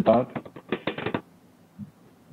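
Speech heard through a video-conference call, a little choppy, ending a little over a second in; after that only faint room tone.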